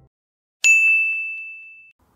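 A single bright ding, a chime sound effect: one sharp strike about half a second in, ringing on one high tone that fades away over about a second and a half.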